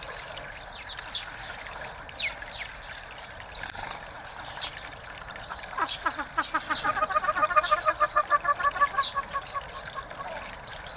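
Small water spout trickling steadily into a stone bird bath, with short high chirps of small birds such as house sparrows. From about six seconds in until near the end a bird gives a loud, rapid series of repeated notes.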